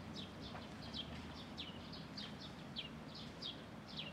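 Small birds chirping: a steady run of short, high notes that each drop in pitch, several a second, over a low steady background rumble.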